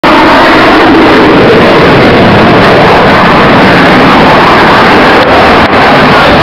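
Fighter jet engines: a loud, steady rushing noise that overloads the recording, with two brief dropouts near the end.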